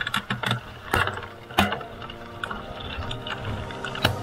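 Mountain bike clattering and rattling over a rocky dirt trail, with a run of sharp clacks and knocks in the first two seconds, then a steadier ratcheting buzz through the rest.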